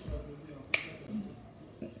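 A single sharp click about three-quarters of a second in, after a soft low thump at the start, over quiet room sound.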